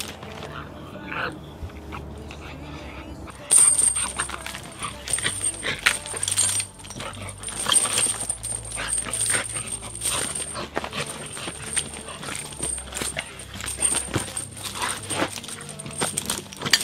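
American bulldog making dog sounds while pulling and tugging on the leash, with scuffling and rattling. About three and a half seconds in the sound turns denser, and a steady high-pitched buzz runs underneath.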